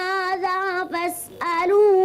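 A young boy chanting in Arabic in a melodic Quran-recitation style, holding long wavering notes, with a quick breath a little after one second before the chant resumes.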